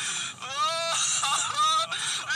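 A young woman's high-pitched voice moaning and whimpering, with rising cries, played back through a smartphone's small speaker.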